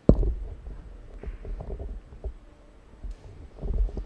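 A sudden low thump at the start, followed by uneven low rumbling with a few faint knocks, and another low rumble near the end.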